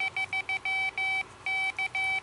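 Piezo buzzer sidetone of an Arduino iambic Morse keyer beeping Morse elements in one steady tone: runs of short dits, then longer dahs with a brief gap, then short dits again, as the touch paddles are switched between. The keyer only checks the paddles after each element finishes, so the dits are hard to get in on time.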